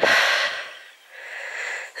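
A woman hiker breathing heavily close to the microphone: two breaths, the first louder than the second.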